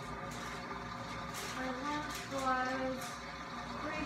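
Indistinct voice speaking in a small room, mostly in the middle of the stretch, with a steady low room hum and a few faint clicks.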